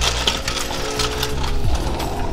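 Barred metal security gate being unlocked and swung open, its metal clinking and rattling through most of the stretch, over background music with a steady low beat.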